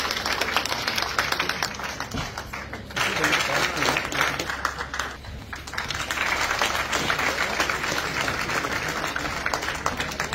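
Audience applauding, easing off briefly about five seconds in and then picking up again, with some voices heard through the clapping.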